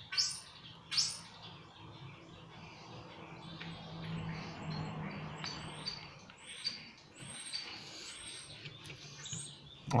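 Flat-head screwdriver working the retaining screw of a pump motor's centrifugal switch, with two sharp metallic clicks near the start and faint scraping after. Faint high chirps run through the background over a low steady hum.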